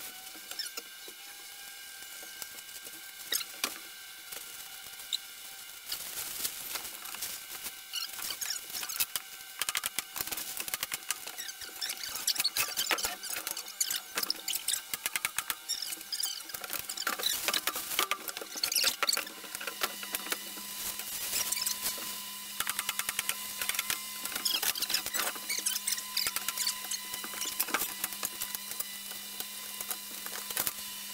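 Thin plastic sheeting crinkling and rustling as it is unrolled and handled, with scattered sharp clicks. A faint steady low hum joins about two-thirds of the way in.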